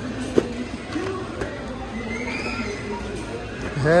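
Shop background with faint distant voices, and light handling of boxed toy-car packs on a shelf, with one sharp click a little under half a second in.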